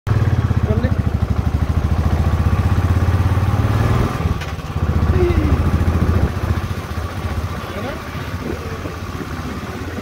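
Motorcycle engine running under way, a steady low pulsing rumble. It is loudest for the first four seconds and again for a moment around five to six seconds, then settles lower.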